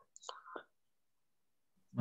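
A faint, brief whispered or murmured word in the first half second, then near silence.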